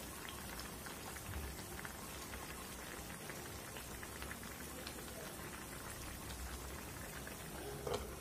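Fish curry simmering in a steel pot on a gas burner: a faint steady bubbling with scattered small pops. A brief clink comes near the end as a steel lid is set on the pot.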